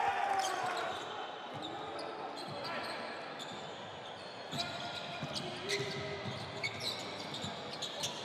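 A basketball being dribbled on a hardwood court, a run of bounces in the second half, under faint players' shouts in an echoing, almost empty arena.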